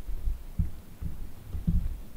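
A few dull, low thumps, the loudest near the end, from hunters shifting their weight and gear in a tree stand.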